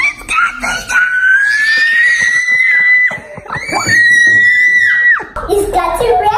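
A young girl's excited screams: two long, high-pitched squeals, the first rising slowly in pitch, the second held level for about a second and a half.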